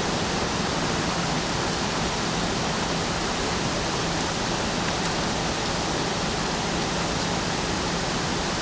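Steady, even hiss with a low constant hum under it; no distinct chewing or crunching sounds stand out above it.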